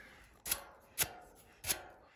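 Three short, sharp knocks, about two-thirds of a second apart, each dying away quickly.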